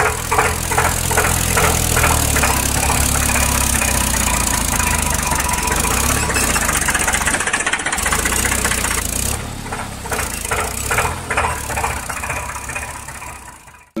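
Tractor engine running with a regular knocking chug, about three beats a second, dipping briefly around eight seconds in and fading out near the end.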